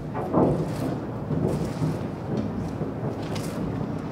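Wind rumbling on the microphone in uneven gusts, loudest about half a second in.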